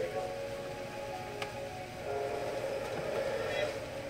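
Television sound, a voice and music, playing at low level in the background, with one light click about one and a half seconds in.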